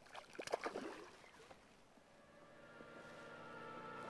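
Short splashes and clicks of water as a hooked rainbow trout thrashes at the surface of a small stream, bunched in the first second. Background music with a sustained chord fades in during the second half.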